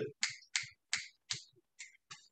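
A quick run of about seven sharp snap-like clicks, roughly three a second, getting fainter.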